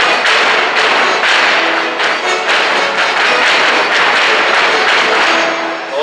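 Live gaúcho folk dance music, with the dancers' boots stamping and scuffing on the stage in a steady beat.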